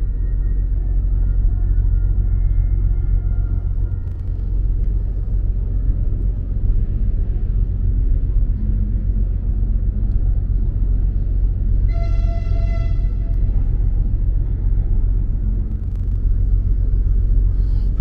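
Steady low rumble of harbour background noise, with one short horn toot, about a second long, about two-thirds of the way in.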